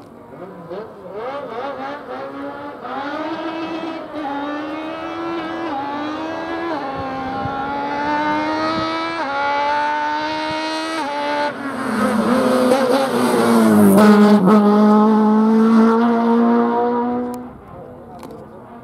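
Autobianchi A112 race car's four-cylinder engine accelerating hard away from the hillclimb start, its note climbing and dropping back at each of several quick upshifts. It is loudest as the car passes close by about two thirds of the way through, the note falling as it goes past, and the sound cuts off abruptly near the end.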